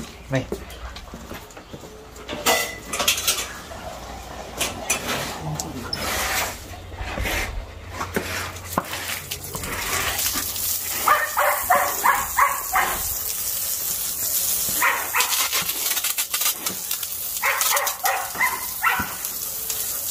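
A garden hose spraying water onto concrete, a steady hiss from a little under halfway in, while a dog barks in repeated short bursts over it.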